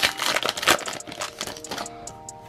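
Foil booster-pack wrapper crinkling and crackling as it is pulled open by hand. The crackles are densest and loudest in the first second, then thin out.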